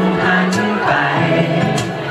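A male singer singing live into a handheld microphone over musical accompaniment.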